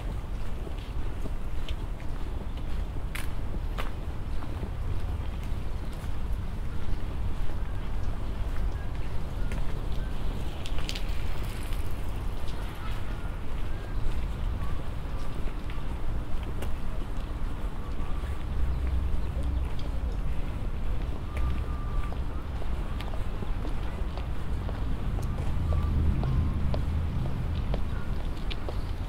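Outdoor ambience: a steady low rumble of wind on the microphone and distant city traffic, with scattered footsteps and faint distant voices.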